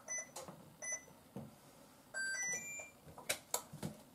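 Induction cooktop control panel beeping: two short beeps, then a quick rising three-note chime about two seconds in as a burner is switched on. A few sharp clicks near the end.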